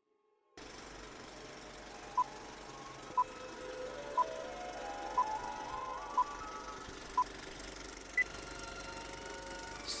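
Film countdown leader sound effect: six short, equal beeps about once a second, then a higher final beep near the end, over a steady hiss like old film noise. A slowly rising tone runs under the middle beeps.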